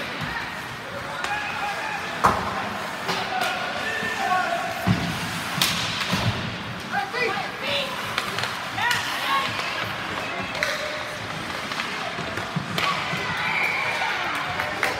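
Ice hockey game heard from the stands: spectators talking and calling out over the rink noise, with a few sharp knocks of stick and puck against the boards.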